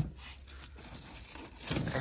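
Cardboard boxes and plastic-wrapped packages being shuffled on a metal shelf: a short knock at the start, then light rustling and scraping that grows louder near the end as a box is pulled out.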